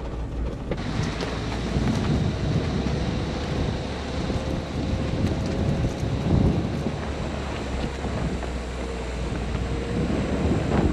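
A four-wheel drive crawling along a rough, uneven dirt track: steady road and drivetrain rumble with uneven swells, mixed with wind buffeting the microphone.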